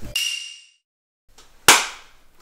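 A single sharp hand clap, palms struck together, about a second and a half in. It follows a brief fading ring and a moment of dead silence at the cut.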